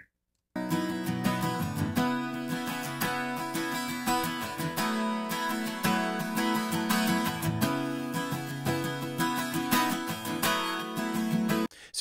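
Recorded acoustic guitar track playing back, starting about half a second in and stopping just before the end. It is being switched between EQ'd and un-EQ'd with bass and low-mid cuts, and about 4.5 dB of makeup gain keeps the two versions at a similar volume.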